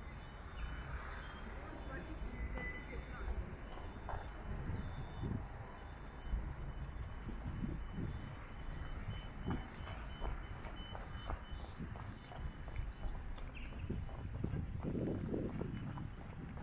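Pedestrian crossing signal sounding a repeated high beep over street noise with traffic rumble, swelling louder near the end.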